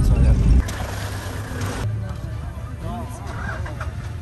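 Loud rumble of a Toyota safari 4x4 driving, heard from inside the cabin, cut off abruptly about half a second in. A quieter low, steady engine hum carries on after it.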